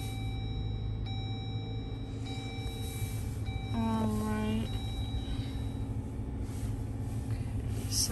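A 2023 Jeep Wrangler 4xe just switched on, heard from inside the cabin as a steady low rumble. Rock music from the SiriusXM radio plays quietly through the car's speakers, with a short sung phrase about halfway through.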